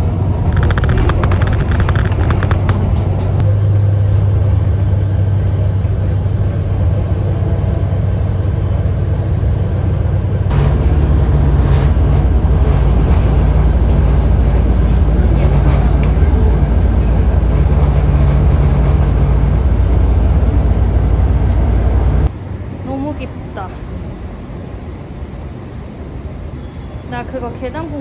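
Steady low engine and road rumble heard from inside a moving bus, with tyre noise, loudest through the middle of the stretch. Near the end it drops suddenly to a quieter, echoing space with faint voices.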